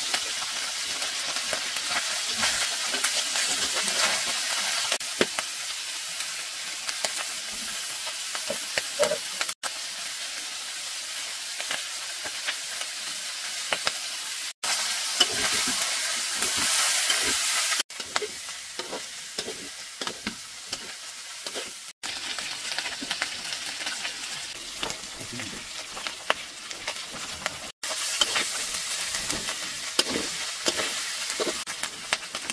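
Pieces of eel sizzling as they fry in a steel wok, stirred and turned with a metal spatula that scrapes and knocks against the pan. The frying breaks off abruptly and picks up again a few times.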